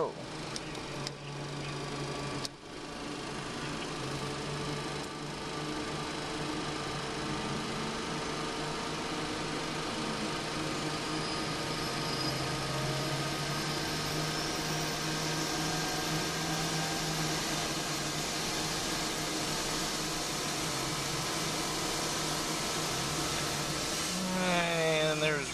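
The Citation X's tail-mounted APU, a small jet engine, spooling up from a start to full speed, heard from the cockpit as a steady hum and rush that grows in about three seconds in, with a faint high whine climbing slowly. A couple of sharp clicks come first, from the start switch being worked.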